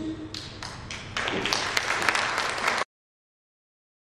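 Audience applause: a few scattered claps at first, then fuller clapping from about a second in, cut off abruptly a little before the end.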